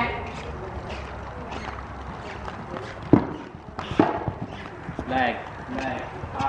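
A horse cantering on soft sand arena footing, its hoofbeats dull thuds, with voices in the background.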